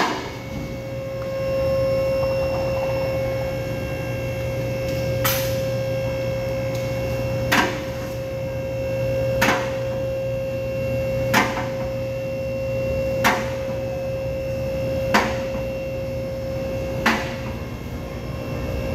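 A steady hum from workshop machinery, with a sharp knock repeating about every two seconds.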